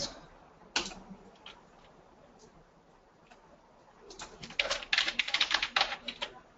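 Typing on a computer keyboard: a quick run of keystrokes over the last two seconds, after a single click about a second in.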